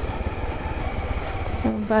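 Honda XRE300's single-cylinder engine running at low speed while the motorcycle rolls over a rough gravel and rock track: a steady low rumble.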